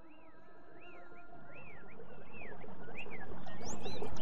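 A soundtrack fading in steadily: a held drone of several steady tones, with short whistled calls that each rise and fall in pitch, about two a second.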